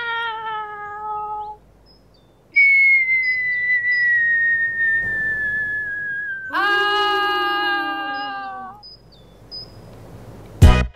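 A short cry of "Ah!" at the start, then a long whistle that slides slowly down in pitch for about four seconds, then a wailing cry that also falls in pitch and fades out near the end.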